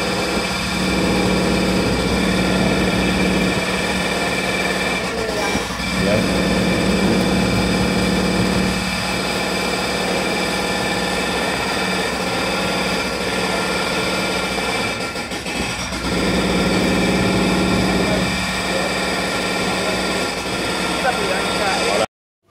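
Roadworks machinery engine running steadily, a constant mechanical drone with a low hum that drops out briefly a few times.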